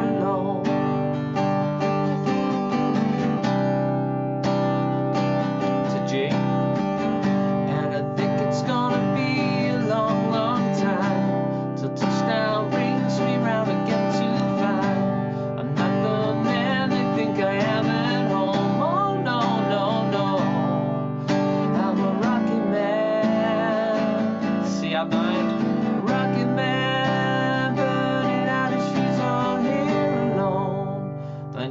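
Acoustic guitar strummed steadily in simple open chords, with a man singing along.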